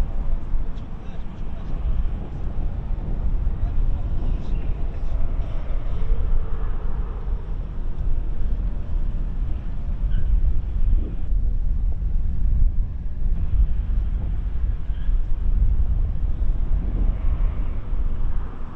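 Steady low rumble of outdoor city ambience picked up by a live webcam microphone, with faint indistinct voices.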